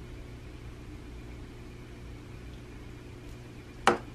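Quiet room tone: a steady low hum. A single short, sharp sound comes just before the end.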